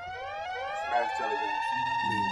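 Siren-like wail in a hip-hop track's beat: one pitched tone with several overtones, rising in pitch over about the first second and then held steady.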